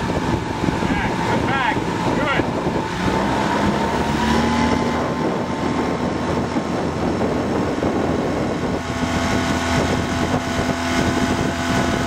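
Outboard motor of a coaching launch running steadily, with wind buffeting the microphone; the engine note rises slightly about three to four seconds in and then holds.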